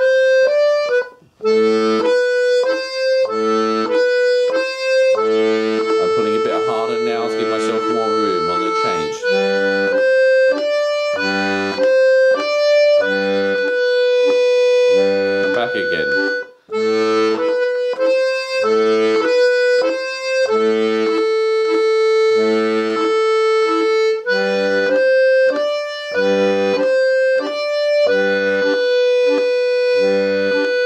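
Two-row button melodeon (diatonic accordion) playing a repeated right-hand melody pattern, with long held high notes, over an even left-hand oom-pah of bass notes and chords. The sound breaks off briefly twice, about a second in and again around halfway, where the bellows change direction.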